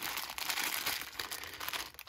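Clear plastic zip-lock bags full of Lego pieces crinkling as they are rummaged through and one bag is lifted out.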